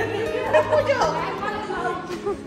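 A group of women chatting at once in a large, echoing hall, with background music holding steady low notes underneath.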